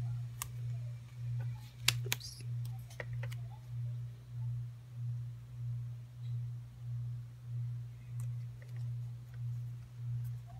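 A few light clicks and taps from a paper sticker being pressed onto a planner page by hand, the loudest about two seconds in, with a few fainter ones later. Under them runs a steady low hum that swells and fades about every 0.7 s.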